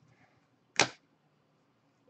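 Gloved hands handling a trading card in a clear plastic top-loader, with one short, sharp swish about a second in.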